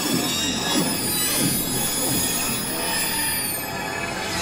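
Electroacoustic music built from beluga whale sounds: a dense layer of many high whistles held together, with quick downward chirps beneath them and a high whistle sliding down near the end.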